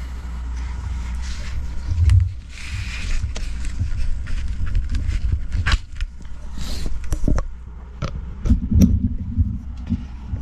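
Microphone cable being handled and its XLR connector plugged into a Shure Beta 58A: scraping and rustling with a low thump about two seconds in, then several sharp clicks in the second half, over a steady low hum.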